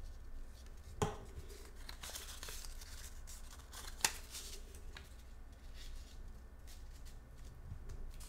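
Faint rustling and rubbing of paper leaves cut from book pages as they are handled and pressed onto a cardboard ring while being glued. There is a sharp knock about a second in and a sharp tap about four seconds in as the glue stick is set down on the table.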